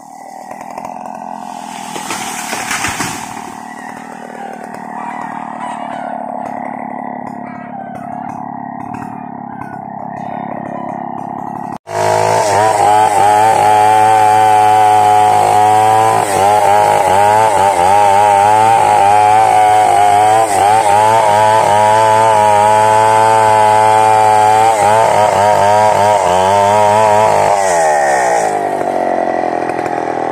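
Two-stroke chainsaw cutting through a coconut palm trunk, the engine at high revs with its pitch wavering under load. It is fainter for the first twelve seconds, then loud and close after a sudden change. Near the end the throttle is let off and the engine falls back to idle.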